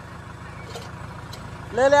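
Tractor diesel engine running steadily at low revs, heard from the driver's seat, a low even rumble; a man's shout cuts in near the end.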